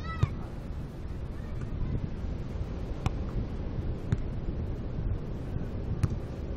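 Beach volleyball in play: sharp slaps of a volleyball being struck by hands and forearms, the loudest about a quarter second in, then two more at about three and four seconds. Underneath runs a steady low rush of wind on the microphone. A short, high-pitched vocal cry is heard right at the start.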